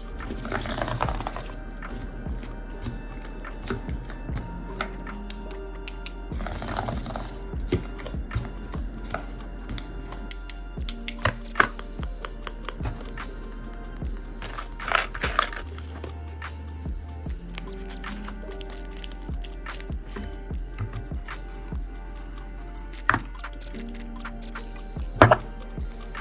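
Background music over many small clicks and taps of art supplies being handled in a plastic case: coloured pencils, a plastic ruler and plastic scissors, with a few brief swishes.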